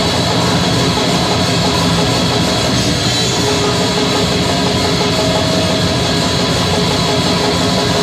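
Black metal band playing live: distorted electric guitars and a drum kit in a dense, steady wall of sound, an instrumental passage without vocals.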